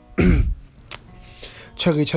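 A man clears his throat once: a short, rough, loud burst that drops in pitch. A faint click follows about a second in, and soft background music runs under it.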